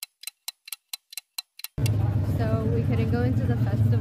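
A quick, even run of sharp ticks, about five a second, in dead silence for nearly two seconds. Then street sound cuts in: a loud, steady low engine hum with voices over it.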